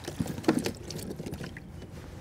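Handling noises on a plastic fishing kayak as a small smallmouth bass is landed: scattered knocks and rattles against the hull and gear, the sharpest about half a second in, over light water noise.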